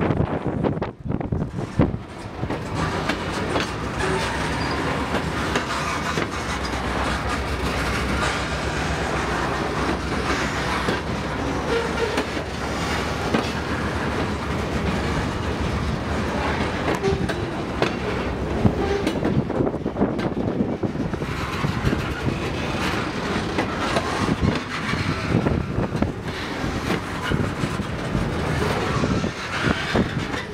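Freight train's covered hopper cars rolling past, steel wheels clacking over the rail joints in a steady run of clicks over a continuous rumble.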